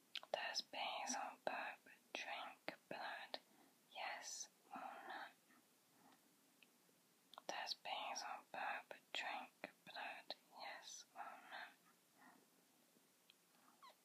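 A person whispering, in two runs of words of about five and four seconds with a pause of about two seconds between them.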